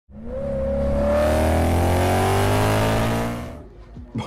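A car engine revving up, starting abruptly and rising slowly in pitch over a steady low drone, then fading out after about three and a half seconds.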